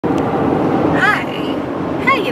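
Steady low road and engine rumble inside a moving car's cabin, with a brief high-pitched voice sound about a second in.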